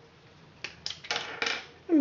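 A few light clicks and taps of small plastic and metal knitting tools being picked up and handled, starting about half a second in.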